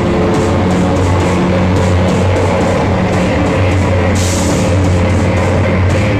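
Loud live heavy drone/noise-rock band playing, recorded from the crowd: a dense, distorted wall of sound over steady low held notes. A bright hiss joins about four seconds in and cuts off near the end.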